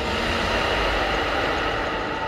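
Rushing whoosh sound effect with a low rumble: a loud hiss sets in suddenly and holds steady.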